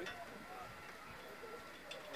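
Faint speech from people standing nearby, with a faint steady high tone underneath.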